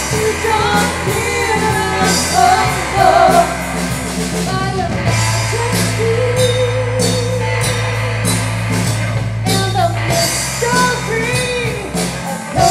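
Christian worship song played by a small band: a singer over strummed guitar, bass and drums. One long note is held through the middle.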